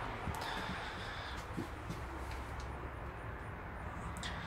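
Steady low background hum and hiss with a few faint ticks.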